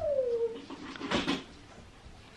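A house cat's short meow that falls in pitch, followed about a second later by a brief rustle.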